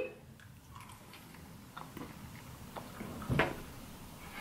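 Two people chewing jelly beans: faint, scattered mouth and chewing clicks, with one short louder sound about three and a half seconds in.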